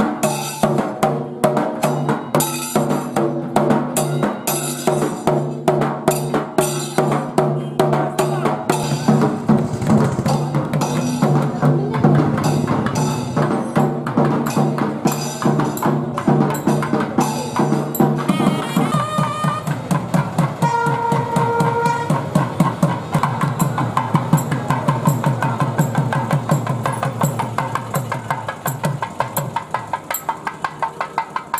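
Processional music led by drums beaten in a fast, even rhythm over a sustained droning tone. The drone drops out about two-thirds of the way through, a few held higher notes sound briefly, and the drumming carries on.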